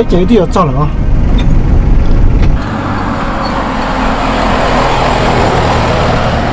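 Light pickup truck on the road: a low engine and road rumble inside the cab, then from about two and a half seconds in the engine and tyre noise of the truck driving past, swelling and then easing.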